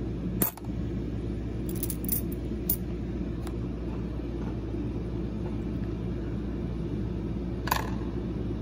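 US presidential dollar coins clicking and clinking as they are handled, with a sharp click about half a second in, a few more around two to three seconds, and another near the end, over a steady low hum.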